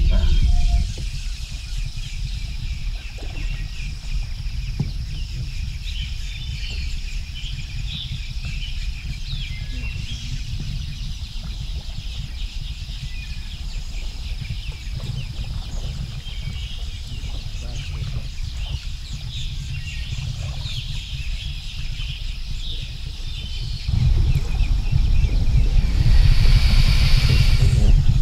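Outdoor river ambience: wind rumbling on the microphone with scattered bird chirps and a steady high insect hum. The rumble grows louder a few seconds before the end.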